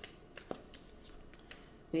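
Tarot cards being handled on a table as a card is drawn from the deck and picked up: a few light, separate card clicks and slides, the clearest about half a second in.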